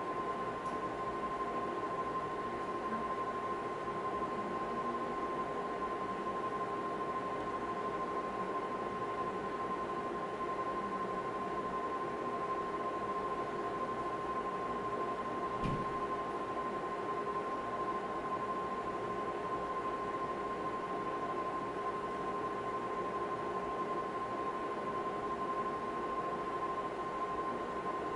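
Steady machine hum with a constant high whine, from an ultrasound scanner's cooling fan and electronics, with a single soft knock about halfway through.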